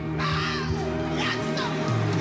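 Live gospel-style music from a vocal group, over steady low sustained notes. High voices cry out and slide down in pitch about once a second.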